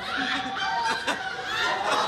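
An audience laughing, many voices at once, swelling louder at the start.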